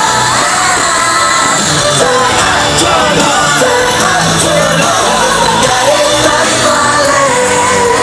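Live pop concert music played over a stadium sound system, a singer's voice carried over the band, loud and steady, recorded from among the audience.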